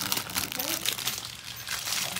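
Plastic toy packaging crinkling and crackling as it is handled and unwrapped, with a brief faint voice about half a second in.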